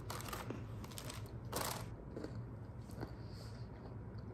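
Quiet handling sounds: a few soft rustles, the clearest about a second and a half in, and small clicks over a faint low hum.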